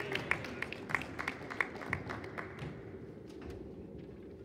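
Sparse clapping from a small audience in a large, echoing gym: a run of quick, irregular claps that thins out after about two and a half seconds.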